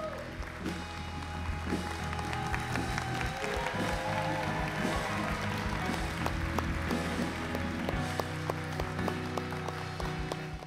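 Band music playing under applause from the congregation as someone comes up out of the baptism water.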